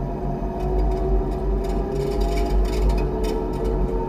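Electric train running, heard from the driver's cab: a steady low rumble with a traction-motor whine that climbs slowly in pitch as the train gathers speed. Short clicks and knocks from the wheels passing over points and rail joints come every second or so.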